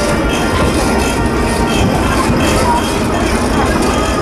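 Band music playing amid people chattering, over a steady low rumble.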